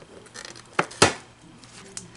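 Scissors snipping at a yellow latex balloon, with a little rustling, then one sharp pop about a second in as the balloon bursts.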